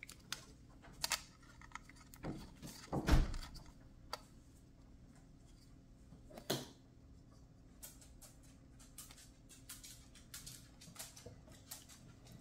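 Handling of a plastic router and its screw-on antennas: scattered clicks and taps as the antennas are fitted and turned, with a louder thump about three seconds in and another about six and a half seconds in.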